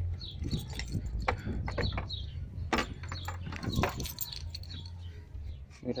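Keys jangling on a key ring while a key unlocks a SEAT Ibiza hatchback's tailgate, with a few sharp clicks from the lock and latch as the hatch is released and lifted open.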